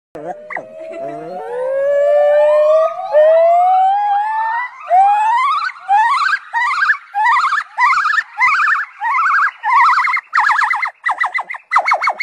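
White-cheeked gibbon singing. It opens with long, slowly rising whoops, then goes into a run of short upswept notes that quicken and climb higher in pitch.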